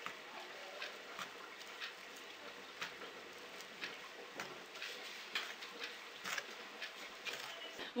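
Steamed couscous grains being rubbed and tossed by hand in a glazed clay dish to work in clarified butter: a faint, irregular rustle with small ticks of grain.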